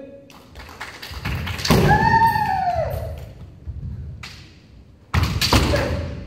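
Kendo bout: a long kiai shout about two seconds in, its pitch sinking at the end, over stamps of bare feet on a wooden floor and the clack of bamboo shinai. A second burst of stamping and shouting about five seconds in.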